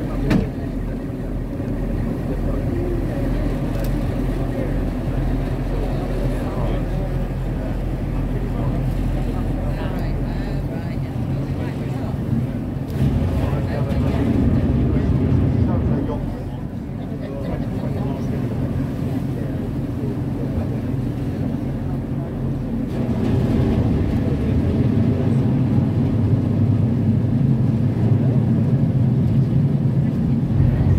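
Tender boat's engine running with a steady low hum under water and wind noise, growing louder for a few seconds about a third of the way in and again for the last stretch.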